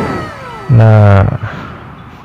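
A long, drawn-out animal cry that falls steadily in pitch and fades out about half a second in.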